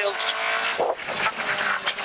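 Toyota AE86 rally car's engine running hard at high revs, heard from inside the cabin.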